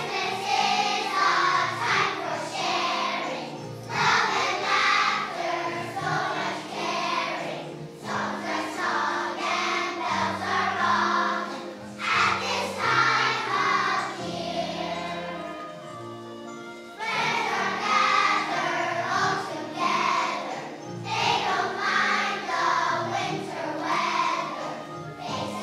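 A large children's choir of kindergarten-to-grade-5 pupils singing with instrumental accompaniment, in phrases with short breaks every few seconds.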